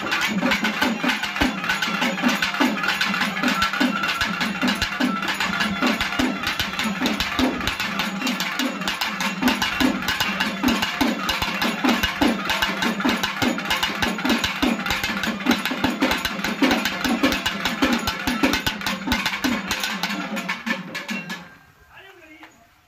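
Tamil temple-festival folk drums beaten with sticks in a fast, driving rhythm, heavy beats about two or three a second over a steady low drone. The drumming stops abruptly near the end.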